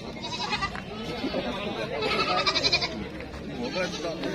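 Goats bleating over background crowd chatter: a short bleat near the start, then a louder one about two seconds in that lasts about a second.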